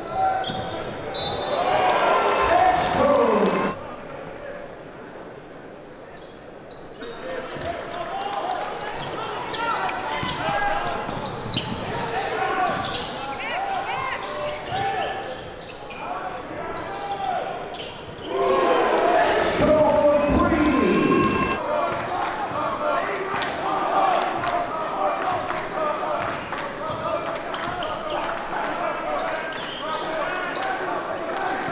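Basketball dribbling on a gym floor under the chatter of an indoor crowd, the crowd noise swelling loudly twice, about a second in and again near twenty seconds.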